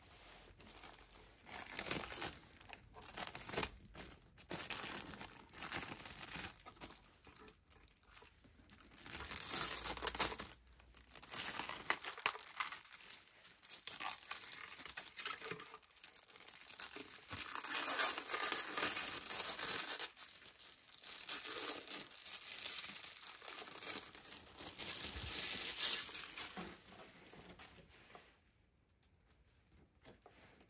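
Clear plastic wrap crinkling and tearing as it is peeled off a toy truck body by hand, in repeated stretches of a few seconds each with short pauses between. It stops near the end.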